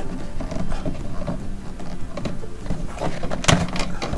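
MaxxFan's plastic insect screen being worked loose from its ceiling frame by hand: light plastic rubbing and tapping, with one sharp snap about three and a half seconds in as the screen comes free of its clips.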